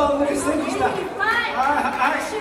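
Indistinct talking: several voices chattering, with higher-pitched voices in the second half and no clear words.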